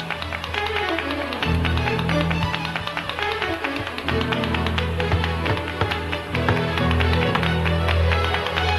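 Music with a steady bass line and a dense rhythm of sharp percussive taps.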